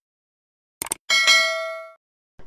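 Subscribe-button sound effect: a quick double mouse click, then a bright bell ding that rings and fades away over about a second.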